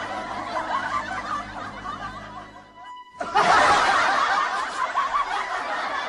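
Laughter from several voices, snickering and chuckling, over background music; it drops out briefly about three seconds in and comes back louder.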